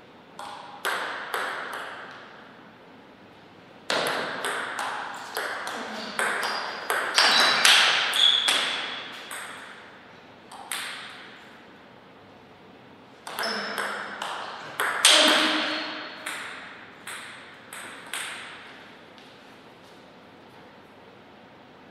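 Table tennis rallies: the ball clicking sharply off paddles and table in quick alternation. There is one long rally from about four to ten seconds and another from about thirteen to nineteen seconds, with a few single bounces before the first.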